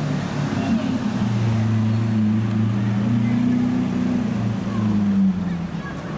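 Lamborghini Aventador's V12 running at low speed in street traffic, its deep note rising and falling a few times as the car creeps forward.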